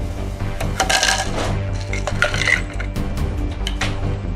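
Background music over the clinks and scrapes of a spoon stirring in a bowl, the clinks gathered about a second in and again around two and a half seconds.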